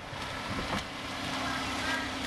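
Outdoor background noise of road traffic and wind on the microphone, with a steady low hum and a couple of faint knocks about half a second in.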